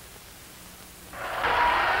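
Low background for about a second, then a steady rushing noise with no clear pitch comes in and holds.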